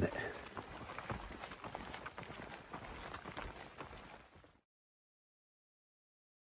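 A hiker's footsteps on a wet forest trail, an irregular run of soft steps over light background noise, fading out and cutting to silence about four and a half seconds in.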